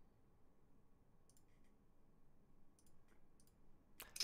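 Near silence, with a few faint short clicks in two small groups, one about a second in and one near the end.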